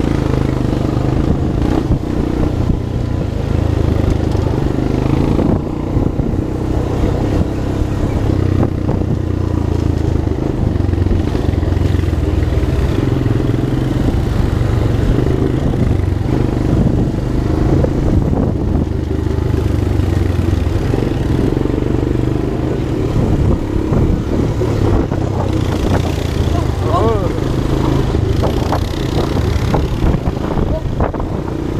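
ATV engine running steadily at trail speed, heard from on board, with a continuous low drone.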